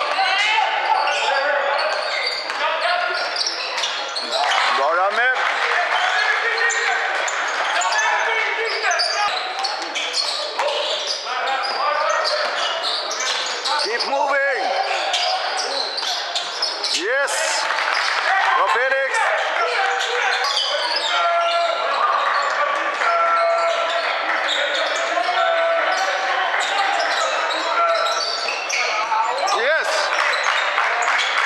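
Basketball game sounds in an echoing sports hall: the ball bouncing on the hardwood court, sneakers squeaking several times, and players and bench calling out indistinctly.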